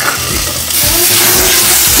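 Lemon-juice-soaked chicken breast fillet on a hot cast-iron griddle, sizzling loudly from about three quarters of a second in.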